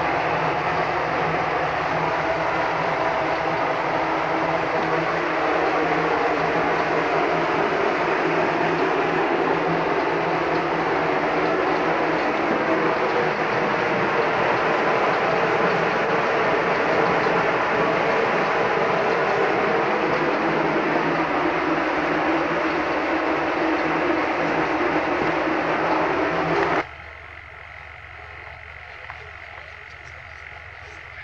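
Loud, steady rushing noise that cuts off abruptly near the end, leaving a much quieter background.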